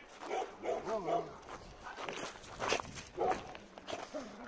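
Shelter dogs barking a few short times, with footsteps on the dirt yard.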